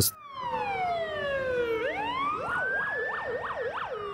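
Police vehicle siren: a long wail falling slowly in pitch, rising again about halfway through, then switching to a fast up-and-down yelp of several quick sweeps before falling again near the end.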